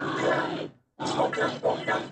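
Cartoon steam locomotive's voice, made of puffs and chugs shaped into laboured words. One long straining puff is followed by a short break just under a second in, then rapid rhythmic chugging at about five puffs a second.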